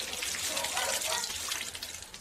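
Water running steadily through a garden hose, flushing leftover liquid foam insulation out of the foaming unit's supply hose before it hardens.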